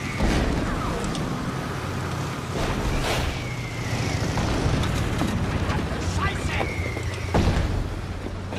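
War-film battle sound: a motorcycle engine running under shellfire. A falling whistle is followed by an explosion about three seconds in, and again about seven seconds in.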